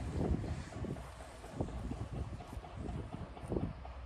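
Wind rumbling on the microphone, with a few soft thuds.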